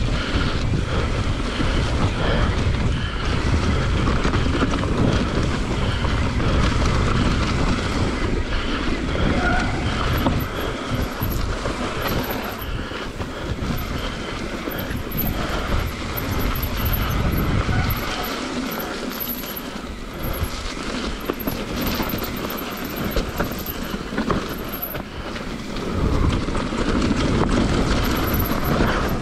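Mountain bike descending a dirt singletrack at speed: wind rumbling on the camera microphone, with tyre noise on dirt and the bike rattling over bumps. The wind rumble eases for several seconds past the middle, then picks up again near the end.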